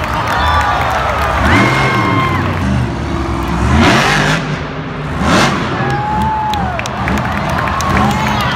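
A monster truck's supercharged V8 revving hard, its pitch climbing and falling as it goes over a dirt ramp, with two loud bursts of noise about four and five and a half seconds in as it launches and lands. A stadium crowd cheers throughout.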